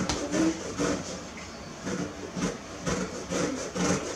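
An orange being zested on a handheld flat grater: repeated short rasping strokes of the peel across the metal blade.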